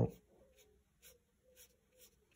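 Faint swishes of a fine paintbrush on watercolour paper: four or five short strokes, about half a second apart.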